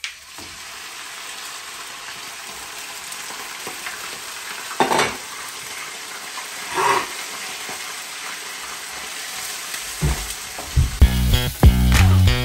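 Pieces of raw meat frying in hot oil in a frying pan: a steady sizzle as they go in and are stirred with a wooden spatula, with two brief louder sounds about five and seven seconds in. Music comes in near the end.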